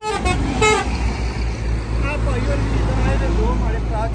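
Busy road traffic: trucks and cars running close by in a steady low rumble.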